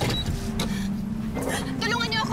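A car pulling up under a held low note of dramatic background music, with raised voices calling out near the end.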